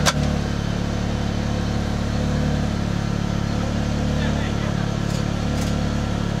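Steady low hum inside a taxi cab, the engine idling with no change in pitch.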